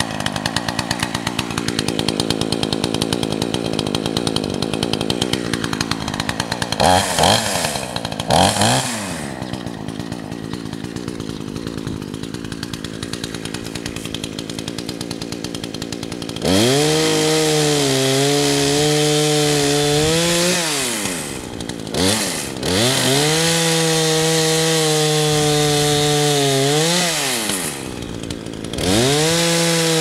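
Chainsaw idling with a fast, uneven putter, revved briefly twice about seven and eight seconds in. From about halfway it runs at high revs, cutting into sapling trunks, its pitch dropping briefly and recovering three times as the throttle is let off and opened again.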